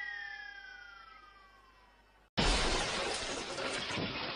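Sound effects from a TV channel ident: a ringing chime with one tone sliding steadily down in pitch fades out over about two seconds. A little past halfway a sudden loud burst of noise cuts in.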